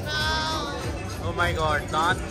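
People's voices over background music: a drawn-out, wavering vocal sound, then a few seconds later a run of short laughing bursts.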